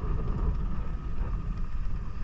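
Low, steady rumble of a motorcycle being ridden, with wind buffeting the microphone.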